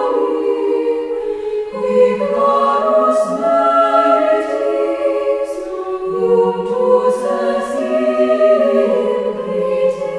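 A choir singing unaccompanied in slow, sustained harmony, with a lower voice part coming in under the held chords twice.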